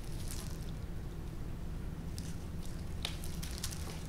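Faint rustles and soft ticks from plastic-gloved hands pushing small succulent cuttings into potting soil in a small pot, with one sharper click about three seconds in. A steady low hum lies underneath.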